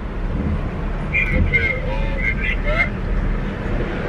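Steady low rumble of a car heard from inside the cabin, with a faint voice in it.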